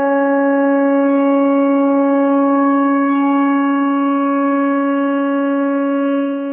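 One long, steady, horn-like blown note held at a single pitch, cutting in sharply just as the singing ends.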